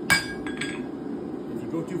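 A rounding hammer strikes the top of a guillotine fuller tool on the anvil once, about a tenth of a second in, with a sharp ringing clang, driving the fullers into a red-hot flat bar to separate the stem from the leaf.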